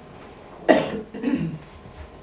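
A person coughing: a sharp cough a little under a second in, followed at once by a second, lower cough.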